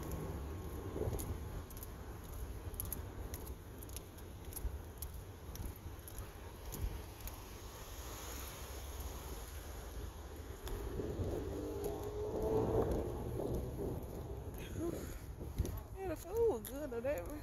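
Steady low rumble with scattered knocks from a hand-held phone microphone, and a faint murmuring voice about twelve seconds in.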